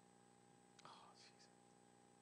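Near silence: a faint steady hum, with a faint short sound about a second in.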